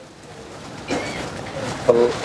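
A bird calling faintly in a pause, with a short chirp-like call about a second in; a voice starts speaking right at the end.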